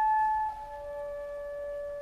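Orchestral music: a single woodwind line holds a high sustained note, then steps down to a lower held note about half a second in. The first note is the louder.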